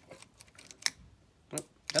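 A couple of light, sharp metallic clicks as small parts of a dismantled hard drive's spindle motor are handled.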